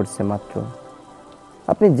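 A man preaching in a slow, chanting voice, breaking off after about half a second and starting again near the end. In the pause a faint steady hiss lies under the voice.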